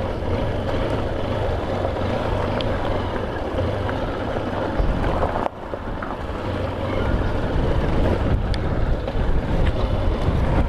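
Motorcycle being ridden along a gravel road: steady engine and tyre noise, with wind buffeting the helmet-mounted microphone. The sound drops sharply for a moment about halfway through.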